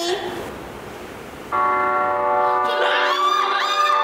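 Opening of an idol-drama theme song played as a quiz clue, starting suddenly about a second and a half in as a held chord of many steady tones; from about three seconds in, voices call out over it.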